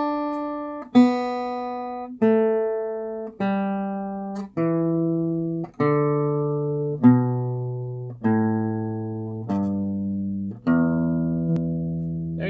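Steel-string acoustic guitar, a Main Street cutaway, playing the E minor pentatonic scale descending one picked note at a time, about one note every second and a bit. It steps down through ten notes and ends on the open low E string, left ringing.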